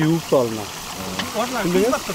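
People talking, with a faint steady sizzle underneath from meat frying in oil in a large cauldron over a wood fire.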